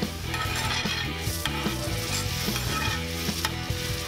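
A pepper sauce of brandy, milk, butter and mustard bubbling and sizzling in a cast-iron skillet while it is stirred with a metal ladle, with a few light clicks of the ladle against the pan.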